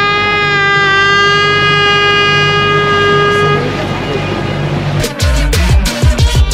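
A horn sounding one long, steady blast that cuts off about three and a half seconds in. It is the starting signal for a boat fishing competition. Music comes in near the end.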